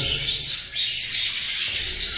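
A flock of budgerigars chattering and chirping, a dense, continuous high twittering of many birds at once.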